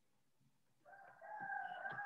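A bird's single long, high, slightly wavering call, starting about a second in, fainter than the nearby speech.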